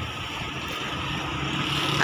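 Small sedan's engine running as the car pulls up close and idles, a steady low hum that grows a little louder.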